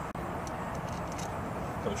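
Steady low outdoor background noise, with a few faint light clicks as a throttle body and its gasket are handled into place on the engine's intake.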